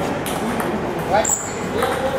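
Table tennis ball clicking off the paddles and the table during a serve and rally, each hit leaving a short high ring. People's voices are heard in the hall.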